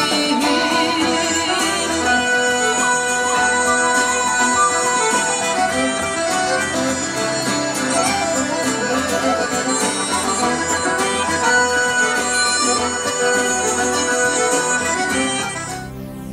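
Live Galician folk instrumental led by a button accordion, with strummed acoustic guitar and a transverse flute; the music fades out near the end.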